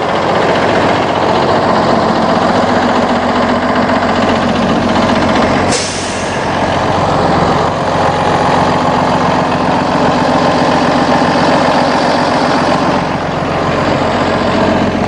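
Cummins 6.7 inline-six turbodiesel in a shuttle bus idling steadily. A single sharp sound breaks in about six seconds in.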